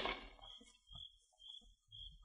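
The end of a radio sound-effect crash of a door being kicked open: a brief clatter right at the start that dies away quickly. Then it is quiet, with only faint scattered noises and a faint high hiss.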